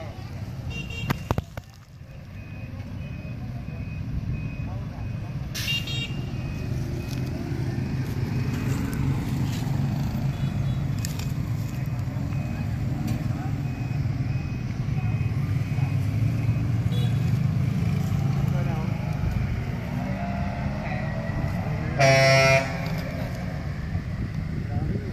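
Low, steady rumble of passing road traffic that grows louder over the first several seconds. A vehicle horn sounds once for about half a second near the end and is the loudest sound.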